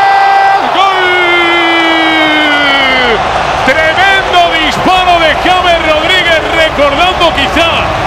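A football commentator's long drawn-out exclamation in reaction to a shot on goal, held for about three seconds and dropping in pitch at the end, over stadium crowd noise. Fast Spanish commentary follows.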